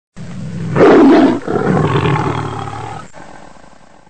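A large animal's roar: a loud surge about a second in, a second roar straight after a brief break, then trailing away into silence.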